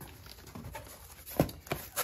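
Cardboard shipping box being opened by hand: faint rustling and scraping of the flaps, with two sharp knocks close together about one and a half seconds in.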